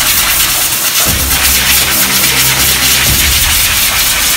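Compressed air hissing from an air hose, over background music with a steady beat.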